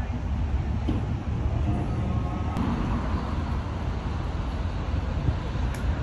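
Road traffic on a city street: a steady low rumble of passing cars.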